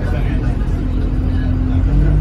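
City bus engine and road rumble heard from inside the passenger cabin: a loud, steady low drone with a faint hum as the bus moves or idles in traffic.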